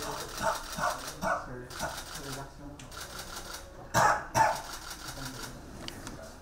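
Indistinct voices, with two short, sharp vocal bursts close together about four seconds in.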